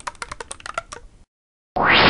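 Computer keyboard typing, a quick run of key clicks that stops a little over a second in. Near the end comes a loud whoosh rising in pitch.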